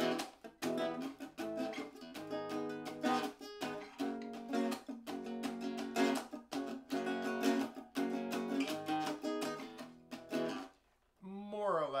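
Nylon-string acoustic-electric guitar strummed in a quick down-up rhythm, playing the song's repeating chord pattern. The strumming stops shortly before the end and a man's voice follows.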